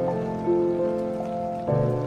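Piano playing slow, sustained chords, with a new chord struck about every half second to second. A steady hiss of rain sits underneath.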